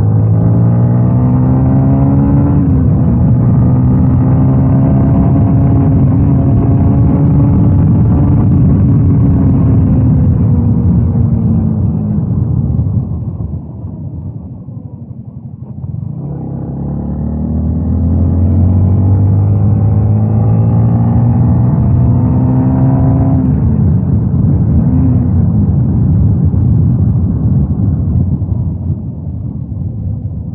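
Yamaha Y16ZR motorcycle's 155 cc single-cylinder engine being ridden hard. It revs up, shifts up with a step down in pitch, holds high revs, then falls off as the throttle closes, running quieter for a few seconds. It pulls hard again with rising revs, shifts up twice more and eases off near the end.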